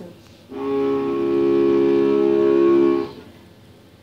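Cello: one long bowed note, starting about half a second in and held steady for about two and a half seconds before it stops.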